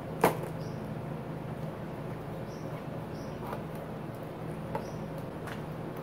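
A cardboard shipping box being opened by hand: one sharp snap about a quarter second in as a taped flap is pulled free, then a few faint taps and rustles. A steady low room hum runs underneath.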